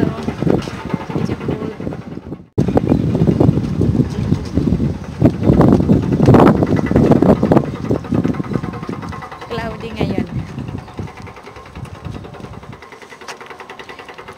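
Wind buffeting the microphone in loud, irregular gusts, fading somewhat toward the end, with snatches of a voice in between.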